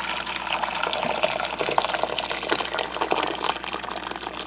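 Water pouring into a stainless steel pot as it fills: a steady splashing.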